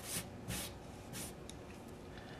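Three short, soft swishes with a few tiny clicks after them: hands rubbing and moving the paintball marker's removed bolt and linkage arm over a cloth-covered bench.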